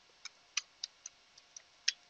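Computer keyboard keys pressed one at a time while a password is typed: about six separate, faint clicks at uneven intervals.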